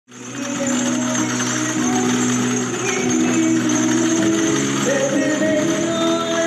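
Voices singing a church hymn in long held notes that change pitch about every second.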